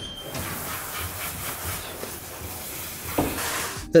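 Steady hiss from the hose of a K9000 self-service dog-wash machine, growing a little louder near the end.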